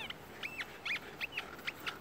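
A dog whining in a string of short, high-pitched squeals, about seven in two seconds, some gliding up or down in pitch, with a ball held in its mouth.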